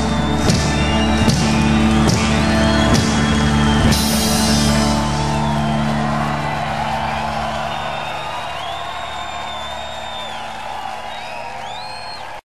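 A live band's closing chord with a few final drum and cymbal hits in the first seconds. The chord then rings out and fades away while the audience whoops and cheers.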